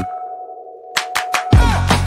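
The background music breaks off, leaving a single steady ringing tone like a sonar ping as an edited sound effect. Three short clicks come about a second in, and then the music with its beat returns.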